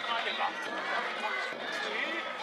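Many voices of a danjiri festival procession, people calling and talking over one another, with running footsteps.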